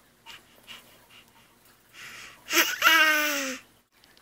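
A baby's excited, breathy vocal squeal, held for about a second and slowly falling in pitch, coming after a couple of seconds of soft faint sounds.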